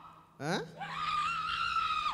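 A person's high-pitched scream: it rises sharply about half a second in, is held for over a second, and falls away at the end.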